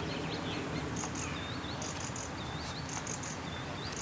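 Birds chirping in short, repeated calls about once a second, over a steady low background noise.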